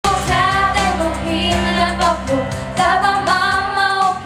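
Four young girls singing together into handheld microphones, their voices held in long notes with vibrato.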